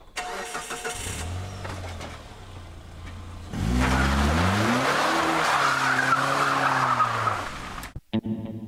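A small car's engine starting and idling, then revving as the car pulls away, the engine pitch rising and falling over the noise of the tyres. The sound cuts off suddenly at the end.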